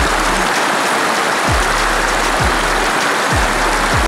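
Shallow mountain stream rushing over rocks, a steady loud water noise. Under it, background music with deep falling bass notes about once a second.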